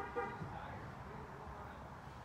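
A brief pitched toot at the very start, sounding twice in quick succession, over faint steady background noise.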